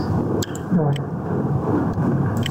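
A few short, sharp computer mouse clicks, about half a second and about a second in, over a steady background noise.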